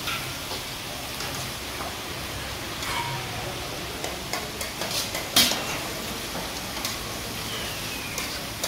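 Chicken and tomatoes sizzling in a steel karahi wok over gas flames, with scattered clanks and scrapes of metal pans and utensils; the sharpest clank comes about five and a half seconds in.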